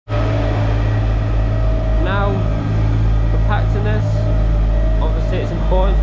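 HD12 twin-drum ride-on roller's diesel engine running with a steady low drone as the roller drives over the rubble base, compacting it.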